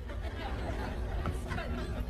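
Low, indistinct background chatter over a steady low hum, with no clear words.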